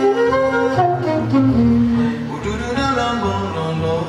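Live jazz duo: a saxophone melody over a double bass line.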